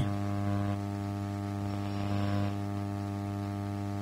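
Steady electrical mains hum on the broadcast audio: a low, even buzz with a ladder of overtones that doesn't change.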